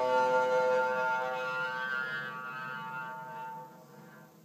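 Double bass bowed arco, with piano, holding a long sustained note that fades away about three and a half seconds in.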